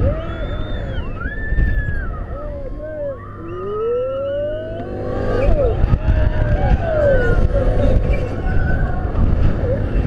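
Riders of a Mondial Turbine Flasher thrill ride yelling and whooping in long rising and falling cries as the gondola swings and flips upside down, over heavy wind rumble on the microphone.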